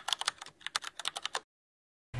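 Keyboard-typing sound effect: a rapid run of key clicks that stops abruptly about a second and a half in.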